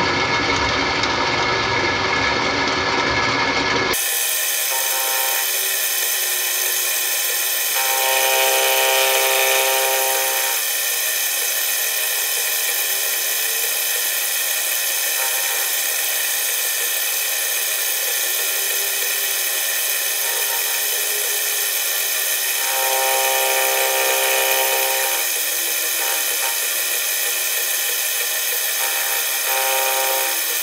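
Milling machine running with an end mill cutting the edge of a cast aluminium puck: a steady whine of the spindle and cut, growing louder and more ringing in two stretches of a couple of seconds as the cutter bites harder.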